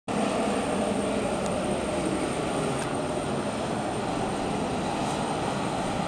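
Aircraft turbine engines running steadily at taxi power: an even rush of noise with a faint high whine over it.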